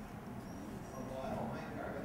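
Quiet pause in a spoken reading: low room noise with a couple of faint, short high squeaks and a soft murmur near the end.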